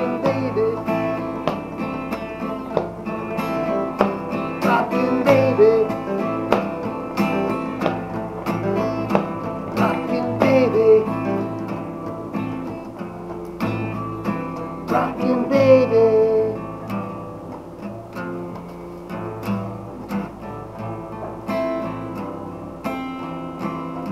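Acoustic guitar music: a strummed instrumental passage of a live song, growing quieter over the second half.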